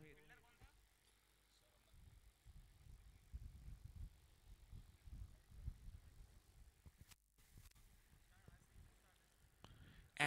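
Near silence: a faint, uneven low rumble, with a brief dropout about seven seconds in.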